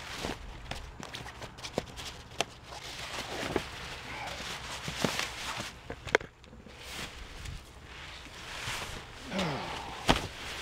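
A person climbing into a hammock with the camera in hand: rustling and handling noise, broken by several sharp clicks and knocks.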